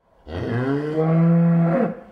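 Dairy cow mooing once: one long call that rises at the start, holds steady, and falls away near the end.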